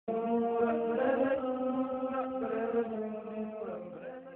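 Intro music carried by a chanted vocal line: long held notes stepping from pitch to pitch. It starts abruptly and fades out near the end.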